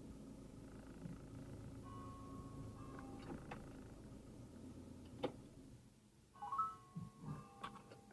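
Inside a stationary Fiat Ducato van's cabin, a low steady hum of the idling engine stops about six seconds in. A sharp click comes just before, and a few clicks and short beeps follow.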